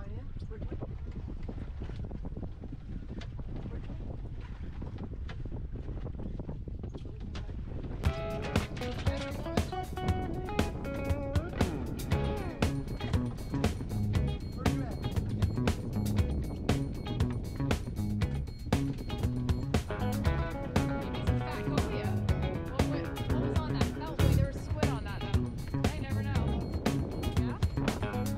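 Wind buffeting the microphone and a low rumble aboard a small boat at sea. About eight seconds in, background music with a steady beat starts and carries on as the loudest sound.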